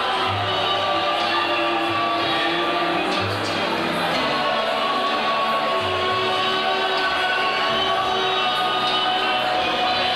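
Live band music: a bass line plays repeated low notes under held chords.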